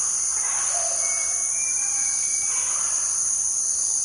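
Rainforest ambience: a steady, high insect drone of crickets or cicadas, with a few faint whistled bird calls in the first half.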